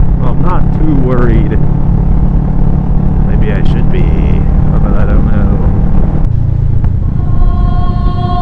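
Motorcycle engine and wind noise at road speed, heard through a helmet camera, with a person's voice over it at times in the first five seconds. About six seconds in, the road noise cuts off and held choir music begins.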